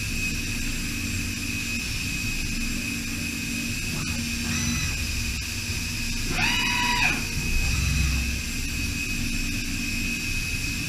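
DMG DMU 65 monoBLOCK five-axis CNC machining centre milling an aluminium block under flood coolant: a steady high whine of the cutting over a low rumble and coolant spray. A short whine sounds about four seconds in. A louder whine rises and then falls about six and a half seconds in, as the machine moves.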